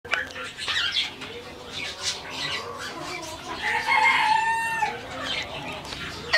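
Domestic fowl calling: a run of short, sharp clucks, with one longer pitched call lasting about a second near the middle.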